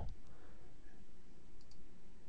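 A few faint computer mouse clicks over a low, steady background hiss.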